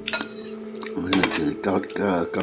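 Eating utensils clinking against dishes at a meal: a sharp, ringing clink right at the start, then a few more knocks about a second in.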